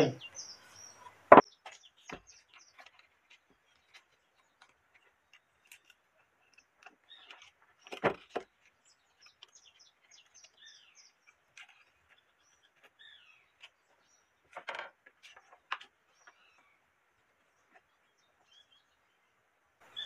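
Sparse handling sounds of an orbital sander that is not running: a sharp knock about a second in, then scattered scrapes and clicks while sandpaper is fitted under its base clamps, with a louder knock near the middle. Faint bird chirps sound in the background.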